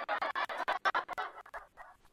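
A woman's breathy, giggling laughter, trailing off in the second half.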